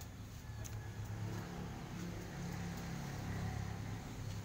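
A steady low engine hum, holding at an even pitch, with a few faint light clicks over it.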